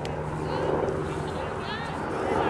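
Distant shouting voices of soccer players and sideline spectators carrying across an open field, over a steady low background hum.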